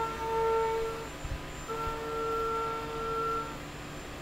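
CNC milling machine cutting the bore of round metal parts, giving a steady pitched whine that holds for about a second, breaks off, and comes back for about two seconds.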